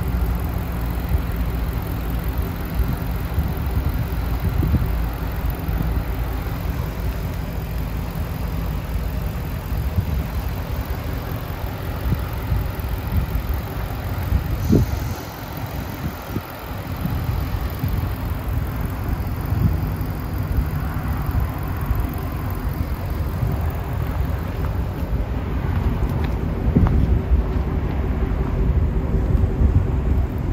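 Ford Shelby GT350's 5.2-litre flat-plane-crank V8 idling steadily with the hood up.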